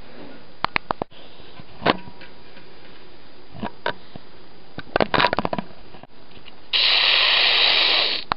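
Plastic toys clicking and knocking as they are handled: a few sharp taps early on, a cluster of rapid clicks about five seconds in, then a loud hiss lasting about a second and a half near the end.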